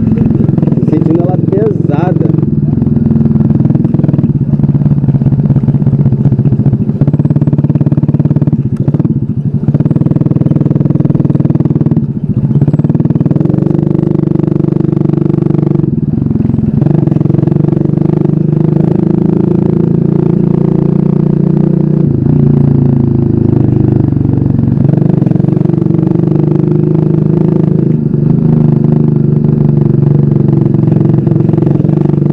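TopTrail small motorcycle's engine running under way, heard from the handlebars. The engine note rises over the first two seconds as it picks up speed, then holds steady, shifting pitch a few times as the throttle and gears change.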